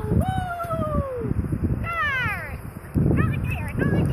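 A person's high, drawn-out voice calls to the dog in long tones that fall in pitch, twice, then quicker short calls near the end, with wind rumbling on the microphone.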